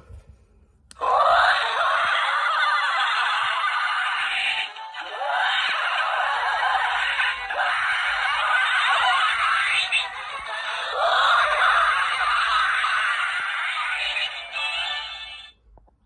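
Spirit Halloween Spiky Sidestepper animatronic clown playing its built-in music through its small speaker, a thin sound with no deep bass. It starts about a second in and cuts off shortly before the end.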